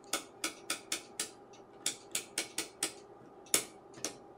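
Tektronix 475 oscilloscope's TIME/DIV rotary switch clicking through its detents as the knob is turned, stepping the sweep-speed setting one position at a time. There are two runs of about five clicks each, a few clicks a second, then one louder click shortly before the end.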